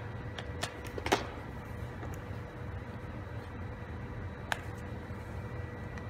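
Quiet room tone with a steady low hum, broken by a few light clicks, one about a second in and another about four and a half seconds in.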